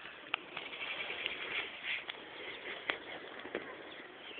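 Outdoor ambience: a steady hiss with faint bird chirps and a few sharp clicks.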